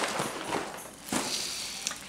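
Soft rustling and shuffling of packaging being handled, as a cardboard cereal box is put down and the next grocery item is reached for, with a few faint knocks.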